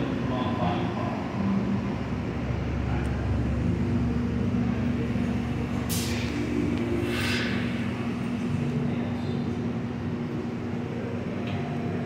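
Steady roar of glassblowing furnace burners and workshop extraction fans. A steady hum joins a few seconds in, and two brief hisses come around the middle.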